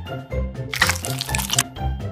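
A ketchup squeeze-bottle squirt sound effect, lasting a little under a second, starts about two-thirds of a second in, over background music with a steady bass line.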